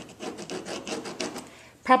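White gel pen tip drawing a line along a ruler's edge on cardstock, an irregular scratchy rubbing that fades about one and a half seconds in.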